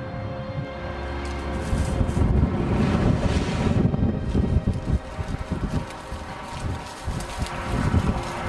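Wind buffeting the microphone, with water splashing as a black Labrador plunges into a river and swims; the splashing is strongest from about two to four seconds in. Music plays faintly underneath.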